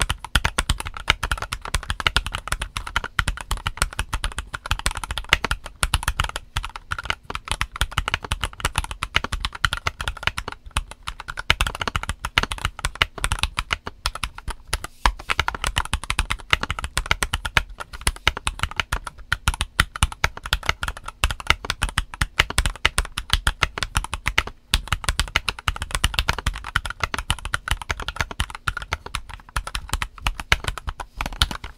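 Stock Mistel MD600 split Alice-layout mechanical keyboard with Gateron Silver linear switches and OEM-profile ABS keycaps, typed on continuously: a dense, fast run of keystrokes, broken only by brief pauses about halfway through and again a little later.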